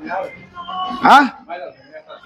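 Background music with a short yelp about a second in that rises then falls in pitch, among brief voice sounds.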